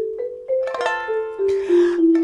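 Marimba played with mallets, a run of single notes about three a second climbing in pitch. Past the middle, fuller music with plucked ukulele strings joins in.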